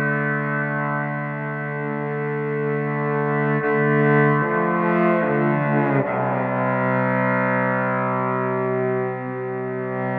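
Instrumental rock music: a distorted electric violin holding long, sustained chords through effects, moving to new chords about four and a half and six seconds in.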